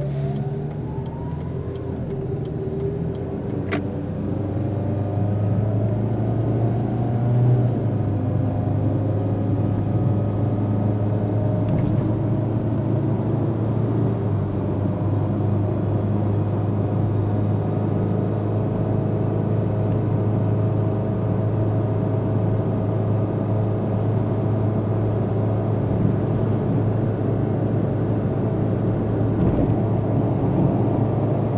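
Car engine and road noise heard from inside the cabin as the car accelerates, the engine pitch rising over the first few seconds, then settling into a steady drone of engine and tyres while cruising.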